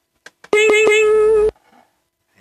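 The V8 sound card's preset "pay attention" sound effect played from its effect button: a steady electronic tone lasting about a second that cuts off suddenly, after a couple of faint clicks.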